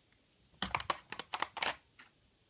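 Hard plastic clicks and taps, a rapid string of about eight, beginning about half a second in: a clear acrylic stamp block and stamp being handled and set down on a desk.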